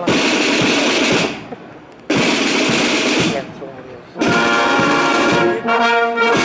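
Marching band opening with three loud bursts of about a second each, split by short pauses: snare drum rolls, the third joined by a held brass chord from trumpets and trombones.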